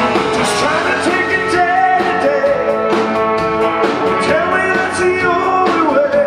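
A rock band playing live and amplified: electric guitar, electric bass and a drum kit keeping a steady beat, with a lead vocal sung over them.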